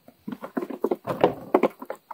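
A young goat's hooves clattering on wooden deck boards as it hops about: a quick, irregular run of taps.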